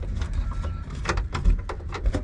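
Hands handling the pressed-steel engine access cover in the rear cargo floor of a 1998 Honda Z: a string of light metal clicks and knocks as the panel and its fasteners are touched.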